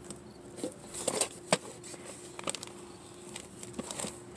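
Scattered light clicks and rustles of small objects being handled in a cardboard box: a plastic bag of items pushed aside and a hinged presentation case opened. A faint steady hum runs underneath.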